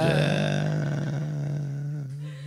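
The closing held drone note of a chant-like song, one steady low tone sounding on alone after the voice stops, slowly fading out.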